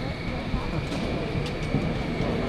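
A vehicle running: a low rumble under a steady high whine that rises slowly in pitch, with a few faint clicks. Faint voices are in the background.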